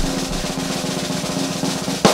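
A snare drum roll, rapid even strokes over a steady held note, edited in as a build-up to a reveal.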